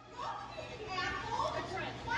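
People talking in the background, over a steady low hum.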